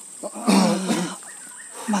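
A man's voice: one loud, drawn-out cry lasting under a second, starting about half a second in.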